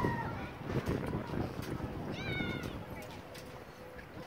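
A single short, high-pitched animal call about two seconds in, rising and then falling in pitch, over low background noise.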